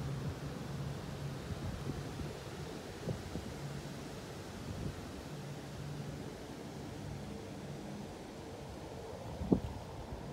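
Steady low outdoor background rumble, with a few faint clicks and a sharper click near the end.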